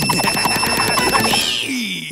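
Cartoon sound effect of a shaking mechanical target: a rapid, even rattling ring like an alarm-clock bell, about ten strikes a second, that stops about a second and a half in. A short high whistle and a low falling tone follow near the end.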